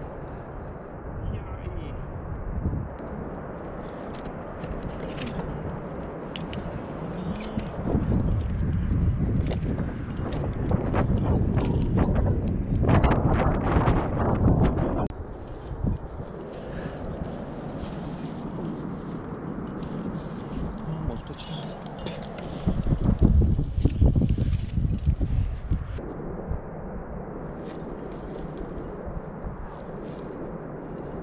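Gusty, rumbling wind noise on the microphone, swelling twice into louder stretches lasting several seconds each.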